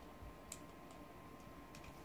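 Near silence with a few faint, short plastic clicks as an action figure is handled and moved.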